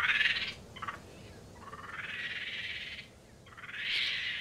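Tropical forest animal calls: high-pitched trilling calls that swell and fade in several waves, the longest about a second and a half.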